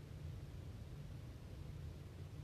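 Quiet room tone: a steady low hum with faint hiss, and nothing else.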